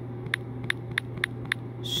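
Typing on a smartphone's touchscreen keyboard: a regular run of short, sharp key clicks, about three a second, over a steady low hum.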